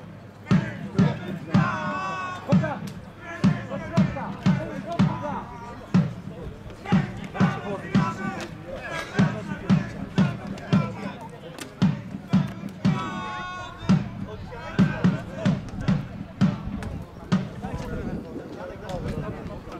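A drum beaten in a steady rhythm about twice a second, with voices chanting or singing over it, typical of football supporters drumming in the stands.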